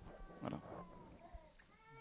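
A man's short, quiet spoken word, then a pause with faint room tone.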